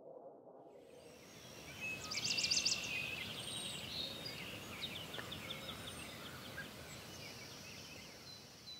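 Outdoor ambience with birdsong over a steady background hiss: a quick high trill about two seconds in, then a run of short repeated chirps, the whole slowly fading.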